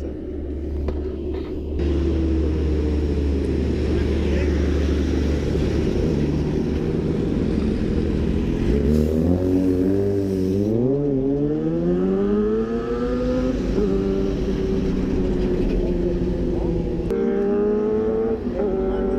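Tractor-trailer truck's diesel engine rumbling as it passes close by. About halfway through, its engine note rises and wavers, then settles into a steady drone.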